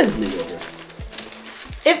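Paper taco wrapper rustling as a taco is unwrapped by hand, with two soft low bumps, one about a second in and one near the end.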